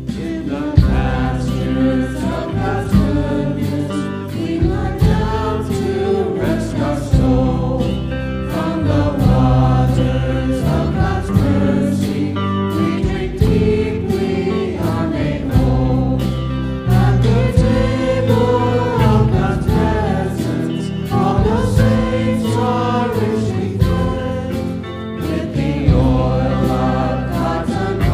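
A hymn sung by several voices with instrumental accompaniment, the melody moving in long held lines over steady sustained chords.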